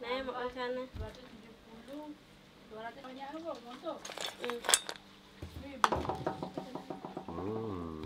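Metal pot and boiled sea-snail shells clinking and clattering against a wire strainer in a metal sink as the shells are drained, with a run of sharp clinks about four to five seconds in.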